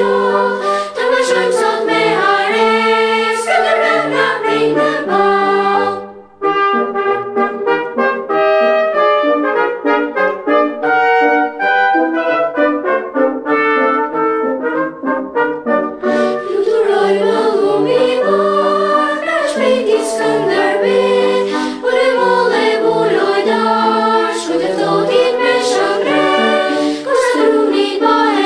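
Children's choir singing an operatic chorus. About six seconds in the sound briefly drops away, then a lighter passage of short, separated notes follows until about sixteen seconds, when the full choir returns.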